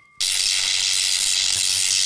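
Loud, steady hiss of television-style static noise, starting abruptly a fraction of a second in and cutting off suddenly at the end: a channel-zapping transition effect.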